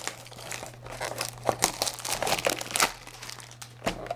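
Plastic shrink-wrap crinkling and tearing as it is worked off a cardboard trading-card box, in a run of irregular crackles, over a faint steady low hum.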